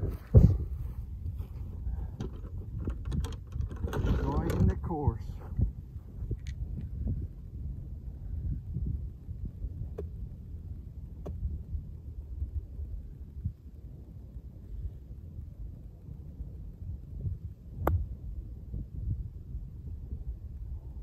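Wind rumbling on the microphone, with a few faint clicks. Near the end comes one sharp crack as an iron strikes a golf ball.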